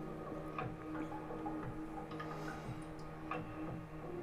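Soft background music with a steady tone, over which a graphite pencil makes a few short, uneven ticks and scratches on drawing paper.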